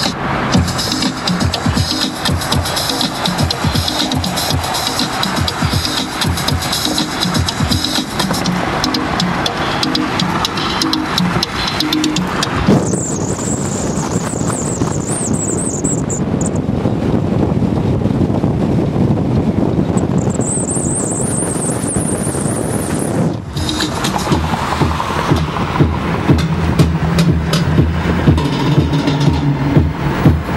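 Music playing on a car stereo with the windows down, over wind and road noise from highway driving. The sound changes suddenly about 13 seconds in to a thinner, noisier stretch with a high whine, and the fuller music returns about 23 seconds in.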